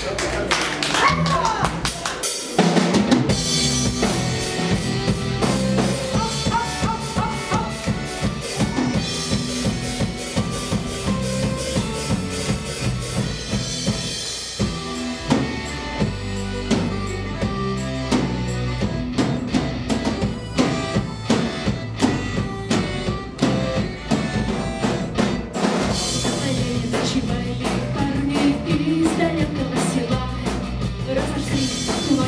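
Live folk-rock band playing an instrumental passage on electric guitar, bass guitar and drum kit. After a short break about two seconds in, the full band comes in, with busy drumming.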